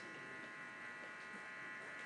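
Faint steady electrical buzz from the microphone and amplification system, a few thin steady tones over a low hiss.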